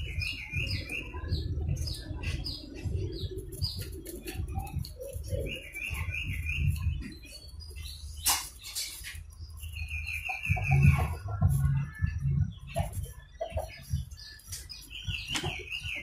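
A bird chirping in short warbling phrases, four times, with knocks and clicks from a circuit board and tools being handled on a wooden bench.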